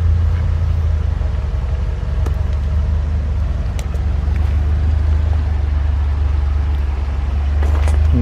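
A 2008 Buick Lucerne CXS's 4.6-litre Northstar V8 idling, heard as a steady low exhaust rumble at the rear of the car.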